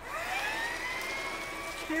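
Animated vehicle motor sound effect: a whine that rises in pitch as the small cement mixer sets off, then holds at a steady pitch.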